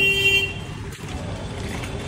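A brief vehicle horn toot at the start, followed by the steady noise of street traffic.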